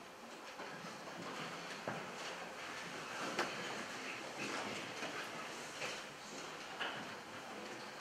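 Pause in a concert hall between pieces of music: a faint, irregular stir of an audience and orchestra shifting in their seats, with rustling and a few small knocks.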